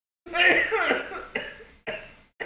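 A man laughing hard: one long voiced burst, then short cough-like bursts about every half second.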